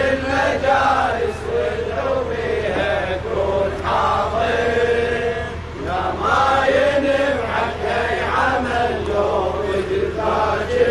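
A group of men chanting a Shia mourning latmiyya together in unison, continuous and fairly loud throughout.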